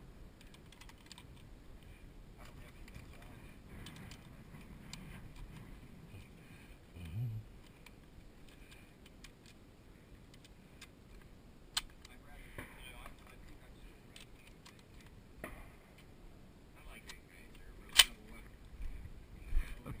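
Faint metallic clicks of cartridges being pushed into a rifle's magazine from a stripper clip, with a sharper, louder click near the end.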